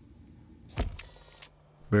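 A sudden click followed by a brief mechanical whir, about half a second long, typical of the transition sound effect laid over a cut to a still photograph in a documentary edit.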